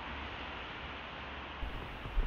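Steady hiss of background noise, with a soft low thump about one and a half seconds in.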